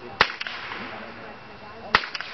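Two blank-pistol shots about a second and a half apart, each a sharp crack followed by a short echo. They are the gunshot test fired during the dog's heelwork to check that it is gun-sure.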